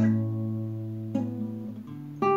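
Nylon-string classical guitar: a strummed chord rings and fades, then a new chord is struck about a second in.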